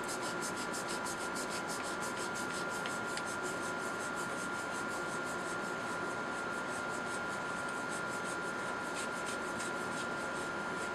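Threaded valve-assembly end cap of a Kalibrgun Cricket PCP air tube being unscrewed by hand: a fast, evenly repeating rasp of metal threads and hand on the tube, fainter in the middle and picking up again near the end, over a faint steady high hum.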